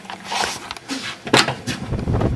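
Handling noise from a handheld camera being swung around while its operator walks, with a few clicks and one sharp knock at about one and a half seconds.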